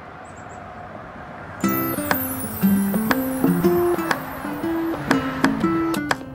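Faint steady outdoor background hiss, then, about a second and a half in, background music on a strummed, plucked string instrument begins and plays on with a steady rhythm of chords and short melodic notes.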